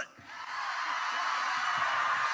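Church congregation cheering and shouting in response to the preacher, many voices blending into a steady crowd noise that builds over the first half second and then holds.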